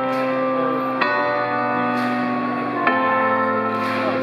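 Live rock band music without vocals: sustained, bell-like keyboard chords changing about every one to two seconds.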